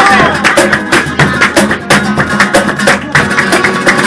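Live acoustic guitar strummed in a quick, steady rhythm, with sharp percussive beats, accompanying Spanish Christmas carols.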